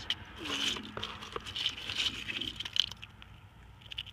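Small northern lampshell (brachiopod) shells clicking and rattling against one another as fingers rummage through a pile of them in a tray, a run of quick light clicks that thins out near the end.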